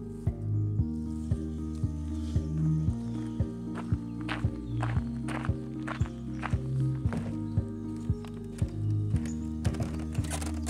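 Background music with a steady beat of about two knocks a second over held low notes.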